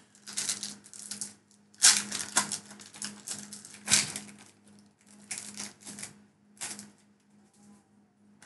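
Foil Pokémon TCG booster pack wrapper being torn open and crinkled by hand: a run of irregular crackling rustles, loudest about two and four seconds in and thinning out near the end.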